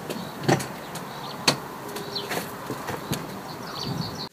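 Peugeot 205 GTI's driver door being opened: two sharp clicks from the handle and latch over a steady outdoor background hiss.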